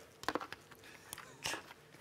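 A few soft clicks and taps of letter tiles being set into a game-show letter board, spaced out over a couple of seconds.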